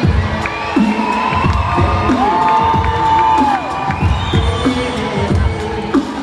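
Live beatboxing: a run of vocal kick-drum thumps with pitched, gliding vocal tones on top, including one long held note in the middle, over a cheering crowd.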